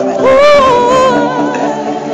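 Pop music with singing. A single voice holds one long, loud note that rises and then wavers, starting about a quarter second in and fading out past the middle.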